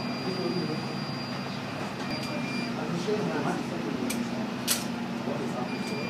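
Indistinct murmur of several people talking in a small room, with a thin high steady whine that comes and goes and a single sharp click about three-quarters of the way through.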